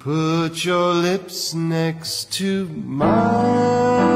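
A male singer's voice opening a song in short held phrases with little or no backing. About three seconds in, the instrumental accompaniment comes in under the voice.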